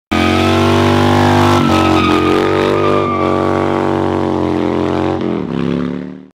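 1993 Harley-Davidson FXR's 80-cubic-inch Evolution V-twin running while the bike is ridden, a loud steady engine note with small changes in pitch about a second and a half and three seconds in, then dropping in pitch and fading near the end.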